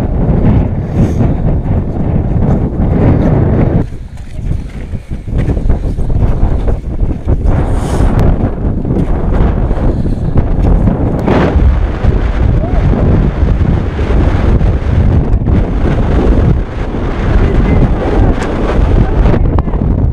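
Strong wind buffeting the microphone in loud, gusting rumbles, easing briefly about four seconds in.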